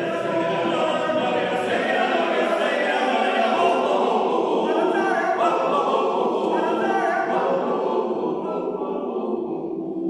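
Male choir of about ten voices singing unaccompanied in several parts, echoing in a stone church. The singing grows a little fuller in the middle and softens over the last couple of seconds.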